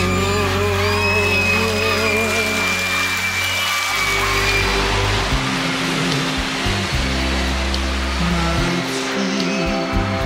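Male pop singer holding a long final note with vibrato over band accompaniment, ending about four seconds in. A steady noisy rush follows, and the opening of the next pop song comes in under it.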